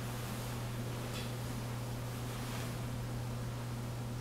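A steady low hum with room hiss, and a few faint rustles about one and two and a half seconds in.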